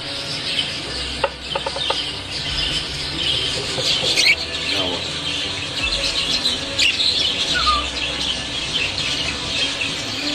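A roomful of exhibition budgerigars chattering and warbling continuously, with a couple of sharper calls standing out about four and seven seconds in.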